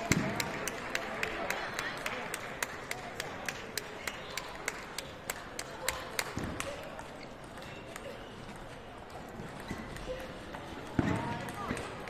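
Celluloid-style table tennis ball clicking in a quick, even run of light ticks, several a second, that fades out a little past the middle, over a low murmur of voices in the hall.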